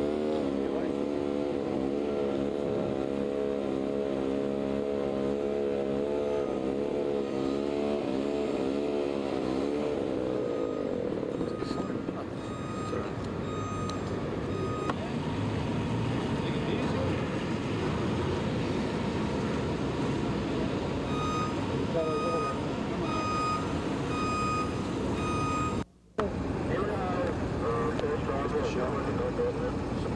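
A vehicle engine runs with a wavering pitch. Then a reversing beeper sounds over street noise, about once a second, and the sound cuts out briefly near the end.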